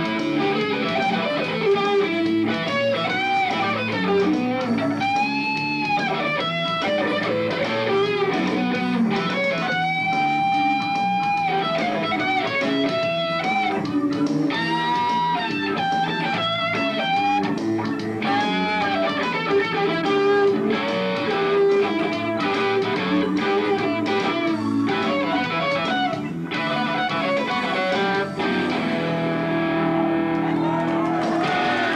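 Stratocaster-style electric guitar played through a combo amp: a lead line of single notes with string bends, vibrato and some long held notes.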